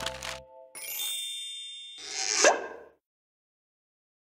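Background music ends about half a second in, then a bright chime of several high tones rings for about a second, followed by a short rising pop-like sound effect peaking about two and a half seconds in, as a closing logo sting.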